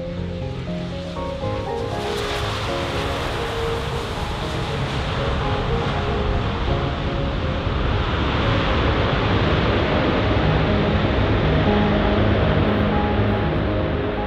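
Background music, joined from about two seconds in by the broad rushing roar of a Boeing 787-9's jet engines as the airliner touches down and rolls out along the runway, swelling louder in the second half.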